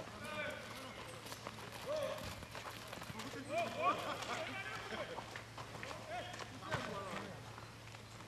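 Footballers calling and shouting to each other across an outdoor pitch, over running footsteps on packed dirt, with a sharp knock of a ball being kicked about two-thirds of the way through.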